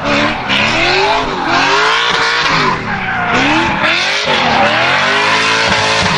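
Lexus IS300 drift car's engine revving up and down again and again while its rear tyres spin and screech, sliding sideways through a bend.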